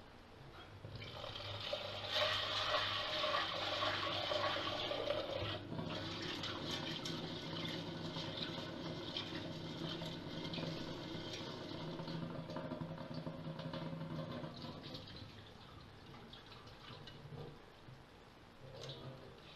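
Water from a kitchen tap running into a stainless steel pot and sloshing around the chickpeas being rinsed in it. It starts about a second in, is loudest for the next few seconds, and eases off near the end as the water is tipped out.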